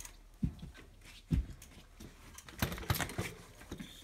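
A few dull knocks followed by a cluster of short clicks and rattles from a mountain bike's front suspension fork and brake hardware as the bike is handled and the fork pushed down.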